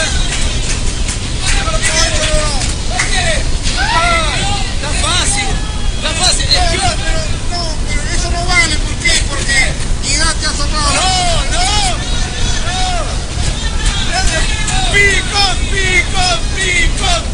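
Several voices talking over one another with bursts of laughter, over a steady low hum.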